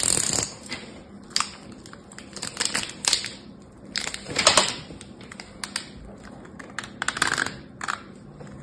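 Plastic-wrapped soap bar multipacks being handled and lifted from a bowl of water beads: crinkling wrapper with many scattered sharp clicks and taps. Louder rustles come at the start, around halfway and near the end.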